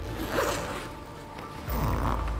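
A zipper on a canvas bag being pulled open in two short strokes, one about half a second in and one near the end, over soft background music.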